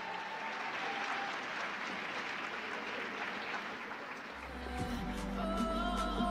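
Audience applauding in an ice arena, an even wash of clapping. About four seconds in, music with a deep bass note starts up.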